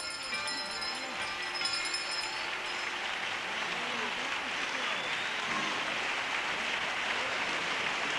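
Theatre audience applause, starting as the comparsa's last sung and played notes die away in the first couple of seconds, then holding steady.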